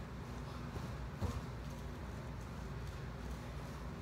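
Steady low hum with a single dull thump a little over a second in, as the body and Swiss ball shift during a knee tuck.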